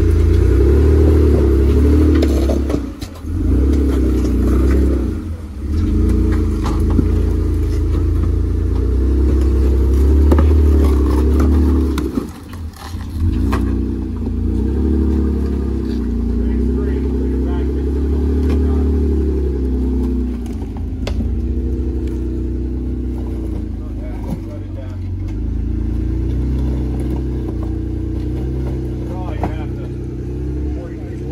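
Engine of a lifted Jeep Wrangler Rubicon rock crawler, revving up and down in pulses as it climbs over boulders. The engine drops off briefly a few times, most deeply about 12 seconds in.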